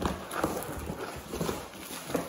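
Cardboard box and bubble wrap rustling, with a few irregular light knocks, as a bubble-wrapped boombox is lifted out of the box by hand.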